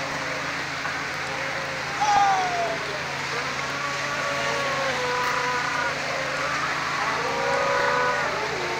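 Fishing boat engine running steadily under a constant rush of churning, splashing sea water, with drawn-out calls rising and falling over it about two seconds in, through the middle and again near the end.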